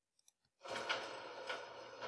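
Sound-library effect of a fire-station garage door opening, played back as a preview: a steady noise with a couple of faint clicks that starts about half a second in and slowly gets quieter.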